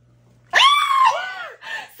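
A person's high-pitched excited squeal, rising then falling over about a second, then a shorter second squeal.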